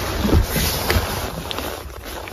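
Handling noise from a handheld phone microphone being moved and brushed: a steady rush with a few soft bumps and a couple of light clicks.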